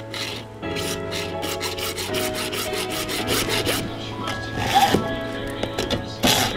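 Hacksaw cutting through PVC pipe with a quick run of back-and-forth strokes, until the pipe is cut through. Background music plays throughout.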